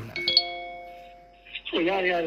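A bright chime, one or two bell-like notes struck close together, ringing out and fading away over about a second and a half, between stretches of speech.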